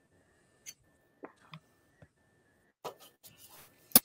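Near silence broken by a few faint, scattered clicks and light knocks: small sounds of hands handling food on a kitchen cutting board.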